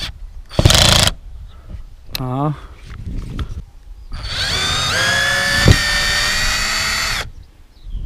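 Cordless drill-driver backing rusted screws out of a caravan's aluminium trim strip. A short harsh burst comes about half a second in, then the motor spins up, rising in pitch, and runs steadily for about three seconds with a sharp click partway through before stopping.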